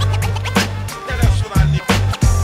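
Instrumental stretch of a 1990s boom bap hip hop track: a deep bass line under a drum beat, with DJ turntable scratches over it.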